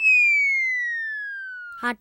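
Comedy sound effect: a single whistle-like tone sliding steadily down in pitch for just under two seconds, loudest at the start and fading as it falls. A spoken 'haan' comes in at the very end.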